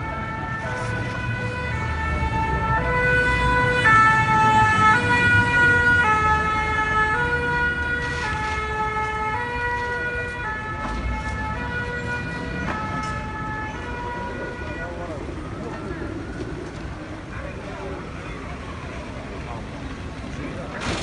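Fire engine's two-tone siren alternating between a high and a low note, loudest a few seconds in, then fading away after about fifteen seconds.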